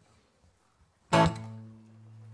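Acoustic guitar: after a moment of near silence, a single chord is strummed about a second in and left to ring out, fading slowly. It is the opening chord of a song.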